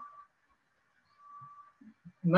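Near silence: room tone, with a faint, brief steady whistle-like tone about a second in.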